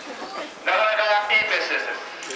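A person's voice calling out, drawn out, starting abruptly about two-thirds of a second in and fading near the end.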